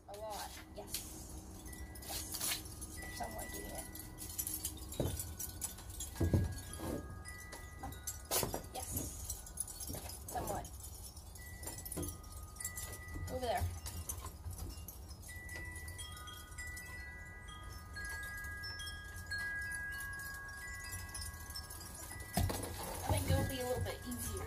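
Wind chimes ringing: scattered single clear tones that sound and hang on, with a few soft knocks in between.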